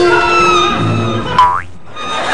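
Background music with a comic cartoon-style sound effect about a second and a half in: a sharp twang with a quick slide in pitch, after which the sound briefly drops away.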